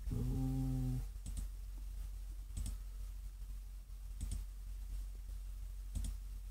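Computer mouse clicks, about four spread over several seconds, as checkboxes are toggled; a low steady tone sounds for about the first second.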